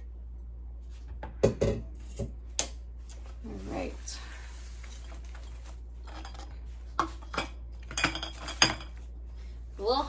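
A spatula and kitchen containers, a stainless pot and a pouring pitcher, clinking and knocking as lotion is scooped and poured. There is a cluster of sharp knocks a little over a second in and another between about seven and nine seconds.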